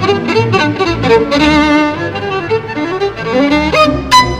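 Solo violin playing a fast tarantella passage of quick, vibrato-laden notes over symphony orchestra accompaniment, with an upward run near the end.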